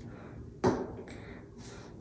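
A single short knock about half a second in, as a small pump bottle of eye gel is set down on a hard surface, followed by faint handling sounds.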